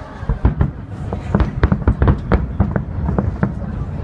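Fireworks salute: a rapid, irregular run of sharp crackles and pops from crackling stars bursting in the sky.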